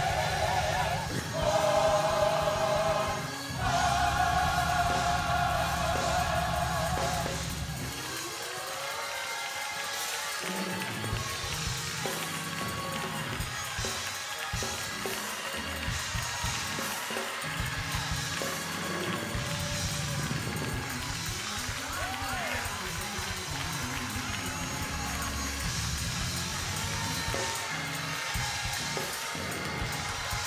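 Gospel church music: organ-led chords held over a steady bass for about the first eight seconds, then dropping back, with a congregation calling out and praising over intermittent music for the rest.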